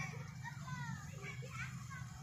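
Children's voices, with short high calls and shouts, as they play in the water, over a steady low background noise.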